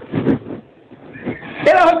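A man's voice: brief low speech at the start, then about one and a half seconds in he breaks into a loud, high, long-held chanted call ('are ho'), in the sung style of a Bengali waz sermon.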